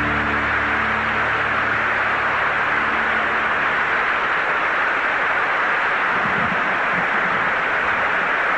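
Audience applauding steadily, over the band's last held chord, which fades out in the first few seconds.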